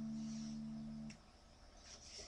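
The final strummed chord on a baritone ukulele ringing out and fading, then stopping suddenly about a second in.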